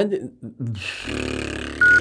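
A man's voice says a word or two, then makes a low, drawn-out buzzing noise for about a second. A short high-pitched beep comes just at the end.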